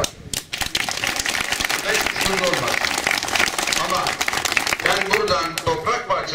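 Audience clapping, a dense patter of hand claps that runs for about five seconds and gives way to speech near the end.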